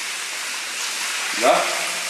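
Steady hiss of running water in a stone tunnel, with a short spoken word about one and a half seconds in.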